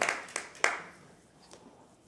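Hand clapping, sharp separate claps about three a second, dying away within the first second, followed by quiet room tone.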